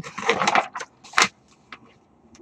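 Paper pages of a model kit's instruction manual being turned and handled: a crinkling rustle in the first half second, a sharp crackle just over a second in, then a few light ticks.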